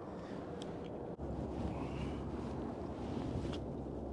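Steady low rumble of wind buffeting the microphone in an open boat, cut off for an instant about a second in and a little stronger after it, with a couple of faint ticks.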